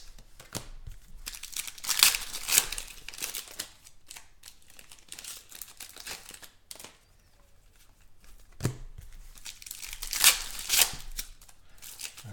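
Foil trading-card packs of 2016 Panini Contenders football being torn open and crinkled by hand, in irregular bursts of ripping and crackling with a quieter stretch in the middle. The packs are not ripping the right way.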